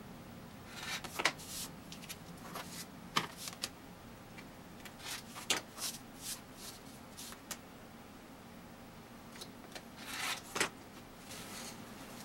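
Rotary cutter run along an acrylic ruler through fabric backed with freezer paper and Pellon, then paper and fabric pieces rustled and shifted on a cutting mat. Scattered short rasps and clicks.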